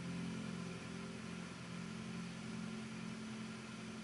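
Final piano chord held down and slowly fading, its low and middle notes ringing on.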